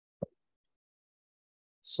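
A single short click from the lecturer's computer about a quarter second in, while a selected line of slide text is deleted; otherwise dead silence, with a man's voice starting right at the end.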